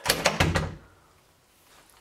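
Metal clicks and knocks as an open Master Lock padlock's shackle is slid out of the hasp of an ARMA-15 rifle wall mount and the mount's cover swings open, a quick run of them within the first second.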